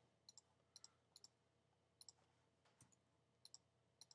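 About seven faint, single computer clicks at irregular spacing, each one placing a point with a drawing program's line tool.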